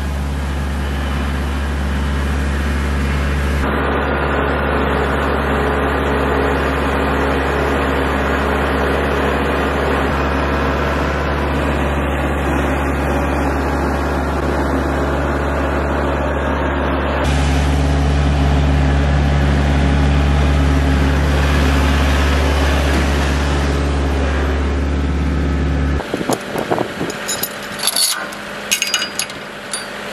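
Kubota L4701 tractor's diesel engine running steadily while dragging a log, its tone changing abruptly twice. Near the end the engine sound drops away and a scatter of sharp clicks and knocks follows.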